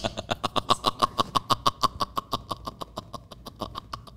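Hard, sustained laughter in a fast, even run of short, high-pitched bursts, about eight a second, tailing off near the end.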